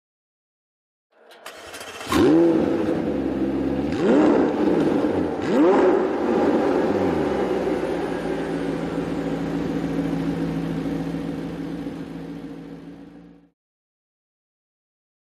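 McLaren 765LT's twin-turbo V8 starting: a brief starter whirr, the engine catching with a flare of revs, two quick throttle blips, then a high idle that slowly settles before cutting off suddenly.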